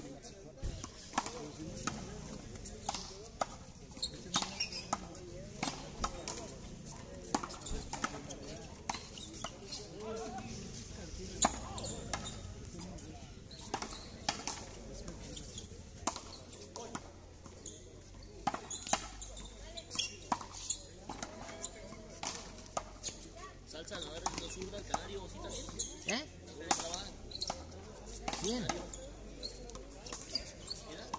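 Frontón handball rally: a rubber ball being slapped by hand and smacking off the front wall and concrete court in sharp, irregular strikes, several every few seconds.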